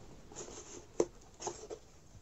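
Moulded cardboard egg carton being handled and opened: light scraping and rustling of the pulp cardboard, with one sharp click about a second in and a few softer ones after.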